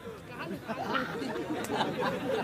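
Quiet, indistinct voices talking, a low chatter with no clear words.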